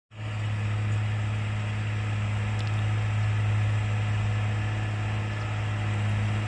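A JCB Fastrac 3230 tractor running steadily under load while tilling soil with a rotary tiller: a constant low, even engine drone.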